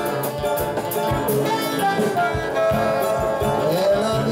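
Live band playing instrumental music: soprano saxophone and flute carrying the melody over acoustic guitar, small strummed guitar and keyboard, with a steady percussion beat. The flute drops out near the end while the saxophone plays on.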